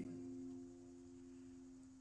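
Acoustic guitar chord left ringing: a soft, steady low tone that slowly fades away.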